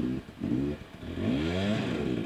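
Dirt bike engine revving as the bike is ridden through rocks: two short throttle blips, then a longer rev that climbs in pitch through the second half.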